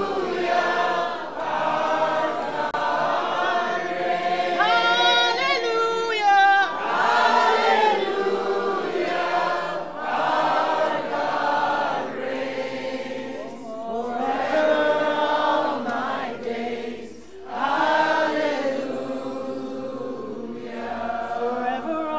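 A group of people singing a worship song together, in phrases a few seconds long with short breaks between them.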